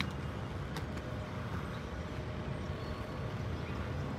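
Steady low rumble of a motor vehicle, with two faint clicks near the start.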